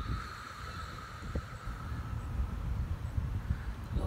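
Outdoor ambience: low wind rumble on a phone microphone, with a faint steady high tone in the distance that fades out about three seconds in.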